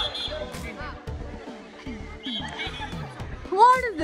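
Background music under group chatter, with one loud high-pitched shout that rises and falls in pitch near the end.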